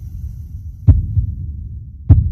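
Intro sound design: a low bass rumble with pulsing beats and one sharp hit about a second in.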